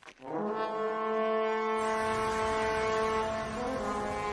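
The Gjallarhorn, a huge curved war horn, blown in one long, steady blast that starts a moment in; a deep rumble joins underneath about halfway, and the note shifts slightly near the end.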